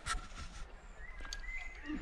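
Faint metal clicks and clinks as a zipline trolley and its carabiners are handled on the steel cable, over a low rumble of wind on the microphone.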